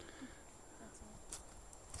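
Quiet outdoor background with no gunshot, broken only by a faint, short click about a second and a half in.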